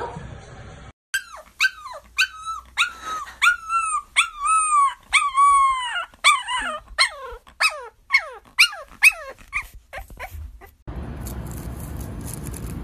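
A puppy howling in a quick run of short, high cries, each sliding down in pitch, some longer and drawn out. The cries stop about a second before the end and give way to a steady hiss.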